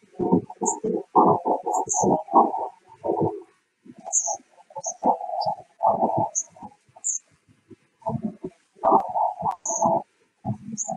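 Garbled, choppy soundtrack of a video played over a web-meeting screen share, breaking up into muffled stuttering bursts with short dropouts, its content unintelligible.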